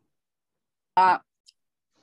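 Dead silence, broken about a second in by one short spoken "uh" in a woman's voice, followed by a faint click.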